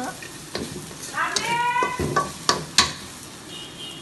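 Onions sizzling as they are stir-fried in a wok over a gas flame, with a spatula scraping and knocking against the pan several times.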